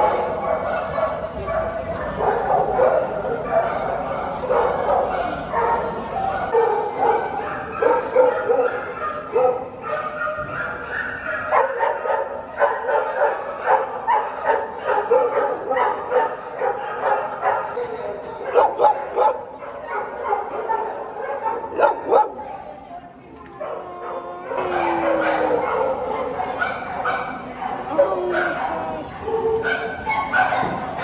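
Many shelter dogs barking and yipping in their kennels, a dense overlapping chorus, with a falling whine about three-quarters of the way through.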